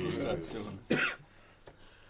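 A single short cough about a second in, following the tail of a spoken phrase.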